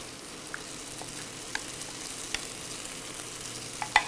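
Chicken, mushrooms and soy sauce sizzling steadily in a very hot skillet, with a few light ticks from the wooden spoon against the pan and a sharper knock near the end.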